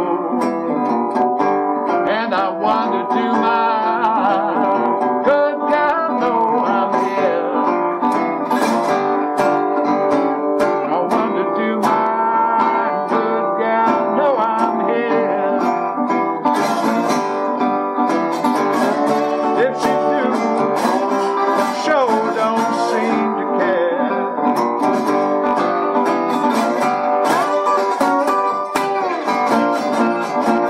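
Blues played fingerstyle on a National tricone resonator guitar, a continuous instrumental passage of picked notes and chords with some notes gliding in pitch.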